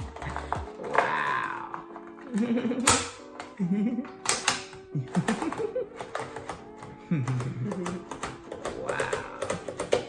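Mechanical braille writer clacking as paper is loaded and its keys and carriage are worked, a few sharp irregular clacks, over background music.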